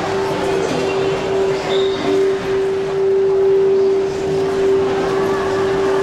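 Shopping-mall ambience: a steady hum at one constant mid pitch over an even rushing background.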